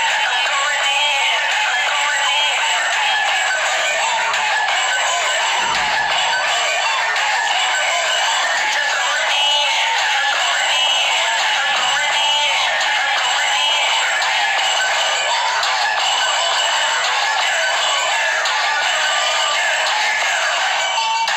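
Hip-hop backing track playing with a sung vocal line, thin-sounding with almost no bass.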